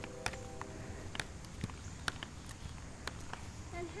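Small child's inline skates rolling on asphalt: a low rumble of the wheels with faint, irregular clicks and scuffs, about two or three a second, as she strides, mixed with the footsteps of someone walking alongside.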